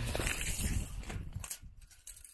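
Footsteps on grass with rustling handling noise, fading out after about a second and a half, with one sharp knock.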